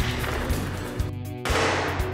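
Film score music with pistol gunshots from a shootout, a sharp shot about a second in and a louder one with a trailing echo about a second and a half in.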